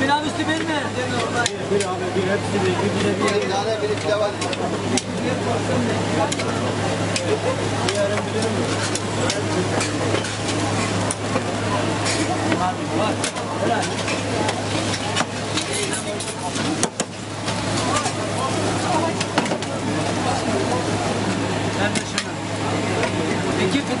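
A döner knife slicing and scraping meat off a vertical spit, with frequent short sharp clicks of the blade, over sizzling, background chatter and a steady low hum from the counter.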